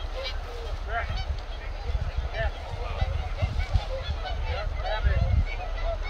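A flock of geese honking over and over, many overlapping calls, with wind rumbling on the microphone.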